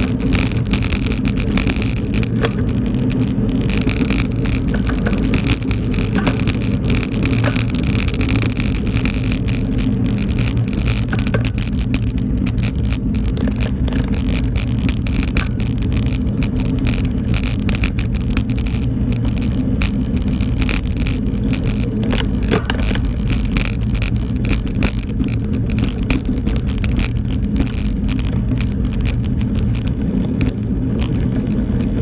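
Steady, loud rumble and wind noise of riding along a bumpy dirt road, picked up by a camera on the moving bike, with small rattles and clicks from the rough surface.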